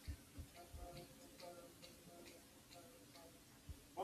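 Near silence: room tone with faint scattered clicks and a few soft low thumps.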